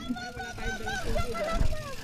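A second human voice, quieter than the nearby talk, speaking in short held tones over a low rumble.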